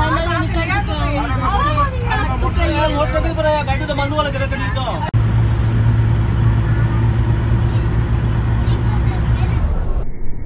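Passengers' voices inside a moving minibus over the steady low rumble of its engine and road noise. About halfway the voices stop abruptly, leaving only the bus's steady rumble.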